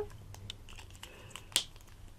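A few faint ticks and one sharp click about one and a half seconds in, from small craft tools being handled and set down on the work table.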